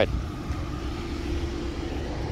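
Steady low mechanical rumble, with a faint steady hum that comes in about half a second in.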